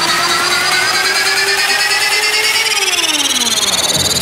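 Trance music build-up: sustained synth tones with no beat, the upper ones gliding upward and a lower one sliding down over the second half, like a riser before a drop.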